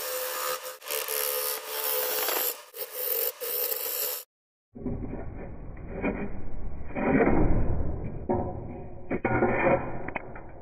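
A bowl gouge cutting a wet spalted red oak bowl blank spinning on a wood lathe, shaping the tenon at its base. The scraping, shearing noise swells and fades with each pass of the tool. About four seconds in it cuts out for half a second and comes back duller.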